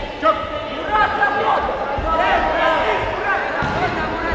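Echoing sports-hall sound during a Muay Thai bout: short calls and chirps throughout, with a sharp knock just after the start and low thuds from the ring about halfway and near the end.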